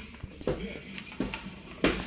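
Toddler rummaging in an Easter basket: rustling of paper basket grass, a few short soft vocal sounds from the child, and a sharp click near the end.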